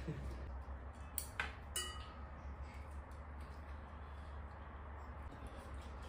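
Quiet room with a steady low hum, and a few light clicks and clinks of tableware during eating, one ringing briefly, in the first two seconds.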